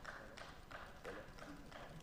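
Quiet pause in a large plenary hall: faint room tone with a few soft, irregular knocks and clicks.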